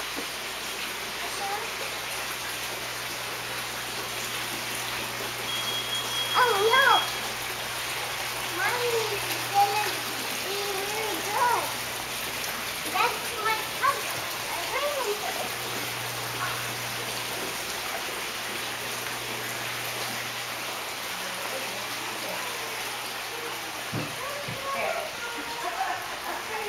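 Indoor children's play-area ambience: a steady hiss with a low hum underneath, and children's voices calling out here and there in the distance, most often in the first half.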